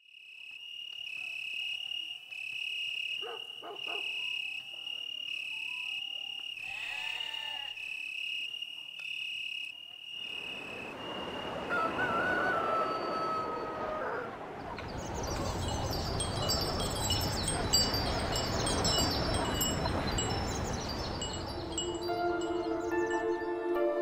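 Dusk outdoor ambience: a steady, pulsing high-pitched insect chirping for the first ten seconds, then a louder, denser chorus of many short high calls over a noisy bed.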